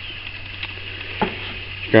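Steady hiss of background noise with a low hum under it, in a pause between spoken phrases, with a short faint sound about a second and a quarter in.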